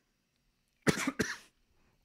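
A man coughing: two short coughs in quick succession about a second in.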